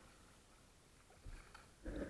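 Kayak paddling: a faint low knock and a few light clicks, then a sudden louder splash and wash of water as the paddle blade digs in beside the bow near the end.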